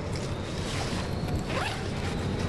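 Backpack zipper being pulled open, with a rising zip about one and a half seconds in, over the steady low rumble of a train carriage running.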